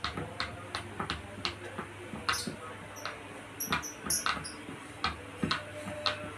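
Silicone pop-it fidget toys being pressed by two children's fingers, the bubbles popping in short, soft clicks at an uneven pace of roughly two a second.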